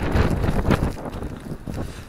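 Storm wind buffeting the microphone in a snowstorm: a gusty rushing noise, strongest in the first second and then easing a little.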